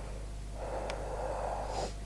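A man breathing in through his nose for about a second and a half, over a steady low hum.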